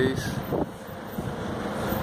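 Steady, featureless street background noise with a low rumble, after the last word of speech dies away at the start.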